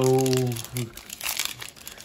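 Foil wrapper of a Yu-Gi-Oh booster pack crinkling in the hands as it is worked open, a dense crackle of small irregular crackles.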